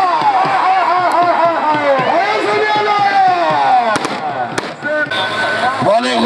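A man's raised voice calling out continuously over crowd noise. Two sharp cracks come about four seconds in.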